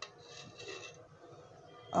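Metal ladle scraping against the side of an enamel pot as it scoops thick milk pudding: a light click at the start, then soft rubbing for under a second.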